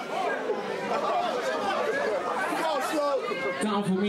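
Many voices talking over one another, crowd chatter in a hall between rap verses.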